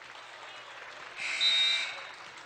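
Referee's whistle: one shrill, steady blast of under a second, starting about a second in, over the background noise of a gym crowd.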